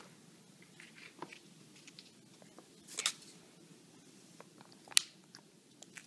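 A few light, sharp clicks and taps over quiet room tone, about a second, three seconds and five seconds in, the loudest near five seconds.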